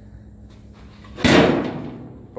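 A single sudden loud bang about a second in, fading away over about half a second.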